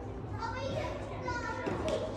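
Indistinct, fairly high-pitched voices talking and calling in a large, echoing indoor sports hall, over a steady low hum.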